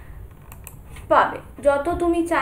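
A few faint clicks about half a second in, then a woman's voice in short bursts of speech.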